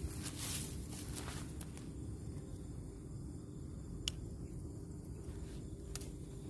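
Low, steady outdoor background noise with a few soft rustles in the first second and a single sharp click about four seconds in.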